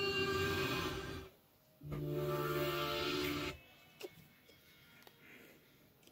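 Subway train horn played through a television, sounding two steady blasts of a second or more each with a short gap between. Near the end only faint clicks are left.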